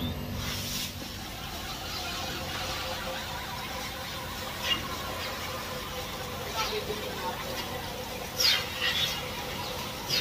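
Steady running noise of milking-shed machinery with a faint constant hum. Short high squeals cut in a few times, near five, near seven, and loudest at about eight and a half seconds.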